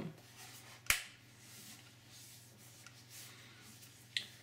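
A single sharp click about a second in, as the tablet's rubber port cover snaps back into place, followed by faint handling rustle.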